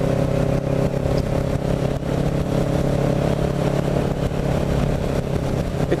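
Kawasaki Ninja 650R's parallel-twin engine running at a steady cruising speed, heard from on the bike with wind rush over the microphone.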